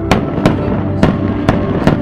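Firecracker bangs: five sharp cracks in under two seconds, over ambient music.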